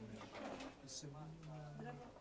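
Faint, low murmured voices in a small room, with a low steady tone held for about a second in the second half.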